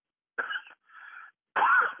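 A man's short cough heard over a telephone line, followed by a fainter breathy sound.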